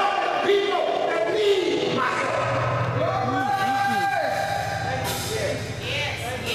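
A preacher's amplified voice, rising and falling, over held keyboard chords; a low sustained bass note comes in about two seconds in.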